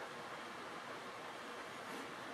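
Faint steady hiss of room tone, with no distinct brush taps.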